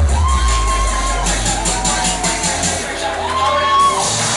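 Loud pop music with a heavy bass beat over a crowd cheering and screaming. Long high screams rise and hold near the start and again near the end.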